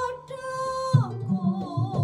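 Keroncong band playing. A single held melody note with its overtones sounds for about the first second. Then a rhythmic plucked bass line and strummed small lutes (cak and cuk) come in under a wavering melody line.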